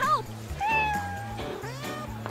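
A cat meowing: a short meow, then a longer drawn-out meow about half a second in, with background music underneath.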